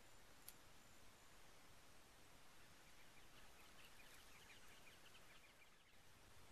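Near silence: faint outdoor hiss, with a single tick about half a second in and faint, rapid high chirping in the second half.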